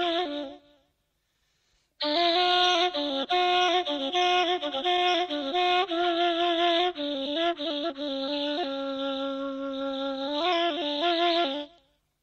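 Persian ney (end-blown reed flute) playing solo in the Shushtari mode: one phrase fades out just after the start, then after about a second of silence a long phrase of held notes and quick ornaments, settling on a lower held note before it stops shortly before the end.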